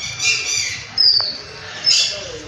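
Birds calling: short, sharp downward whistles about once a second, with harsher squawking calls between them.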